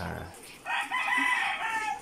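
A chicken crowing: one drawn-out call of about a second and a half, starting about half a second in and dipping slightly in pitch at the end.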